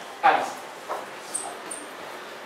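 Board eraser and chalk working on a blackboard: a short squeaky rub near the start, a smaller one about a second in, then two brief, very high chalk squeaks.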